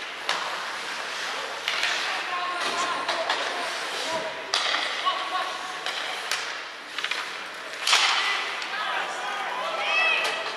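Ice hockey play in an echoing rink: sticks and puck clacking and skates scraping the ice, with sharp knocks ringing around the arena, the loudest about eight seconds in. Faint shouts from players come through as well.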